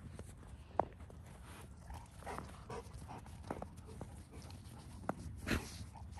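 Dogs moving about in the snow: a few faint, scattered short sounds, the sharpest about a second in and another near the end.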